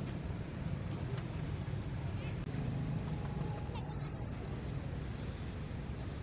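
Steady low outdoor rumble, with a few faint, short, high chirps about two and four seconds in.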